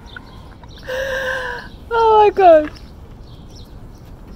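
A woman squealing and laughing in delight: one held high note about a second in, then two quick cries that fall in pitch.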